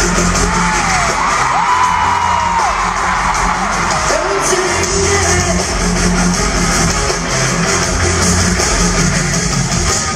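Live pop-rock music played loudly in an arena, heard from among the audience: heavy bass and drums under a vocal line, with high gliding cries that are likely crowd whoops in the first few seconds.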